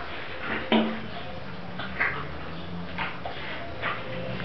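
Boxer puppy making a few short, small whines, the loudest about three-quarters of a second in, with fainter ones later.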